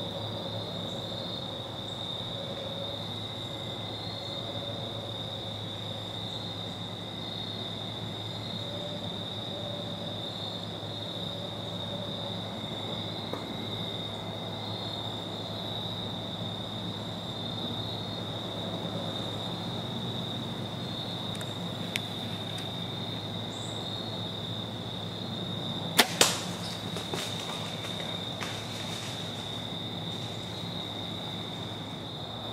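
Bow shot at a whitetail buck near the end: two sharp cracks a fraction of a second apart, the bowstring's release and the arrow striking the deer, followed by a few seconds of rustling in the leaves as the deer bolts. A steady, high chorus of evening insects runs underneath.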